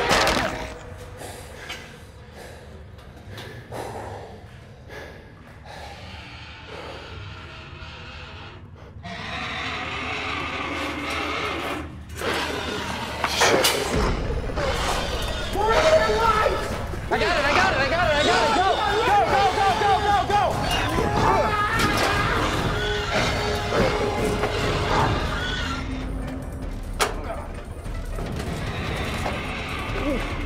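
Film soundtrack mix of music and wavering, non-word vocal cries, with a few thuds. It is subdued for the first several seconds, then turns loud and busy from about halfway through.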